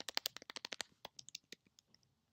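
Computer keyboard keys clicking as a word is typed: a quick run of keystrokes in the first second, then a few scattered ones.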